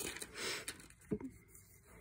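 Faint handling noise: a light click, a short soft rustle about half a second in, and a couple more small clicks a little after a second, then little more than room tone.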